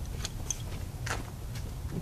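Car engine idling steadily, with faint scattered ticks. One cylinder's ignition wire is pulled off its spark plug and hooked to an inline spark tester.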